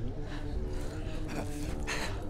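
Heavy, ragged panting breaths from exhausted fighters, over a low held music drone and rumble.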